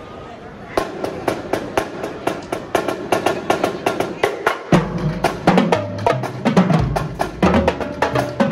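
Marching drumline playing: snare and tenor drums break into a fast, dense pattern about a second in, and the tuned bass drums join with low pitched notes a little past halfway.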